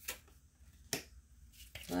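Two sharp clicks about a second apart from a tarot card being handled and laid down on the table.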